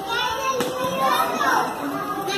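Young children's voices chattering and calling out over one another in a classroom.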